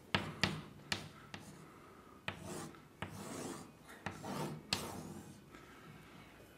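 Chalk on a blackboard: a few sharp taps in the first second or so, then about four short scraping strokes as lines are drawn.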